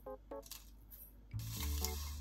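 Dry furikake flakes shaken from a jar onto rice, a light rattling and clinking, over background music with a deep low note from about halfway through.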